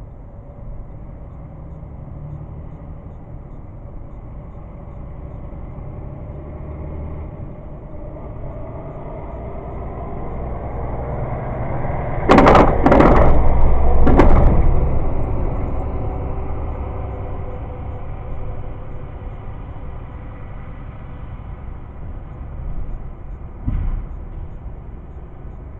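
Freight train rolling directly over the rails above: a low rumble swells to a peak about halfway through, with three sharp, loud bangs of wheels hitting the rail close by, then eases off; one more short knock comes near the end.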